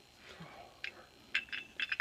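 Small sharp metallic clicks and clinks as a steel Beretta M9 pistol magazine is taken apart by hand, the follower being worked out of the tube. The clicks come in a quick run in the second half.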